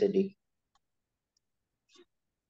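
A man's voice finishing a word, then near silence broken by a few faint, short clicks, the last just at the end.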